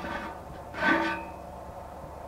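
A brief metallic scrape and squeal as a wire grill rack is pulled out of a steel milk-can mailbox, starting about a second in with a held high squeak that dies away quickly.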